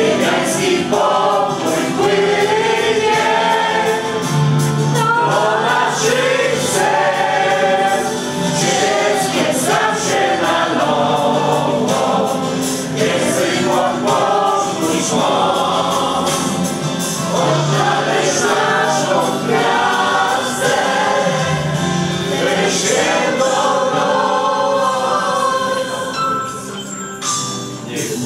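A mixed choir of men's and women's voices singing a song together, with a steady sung melody throughout.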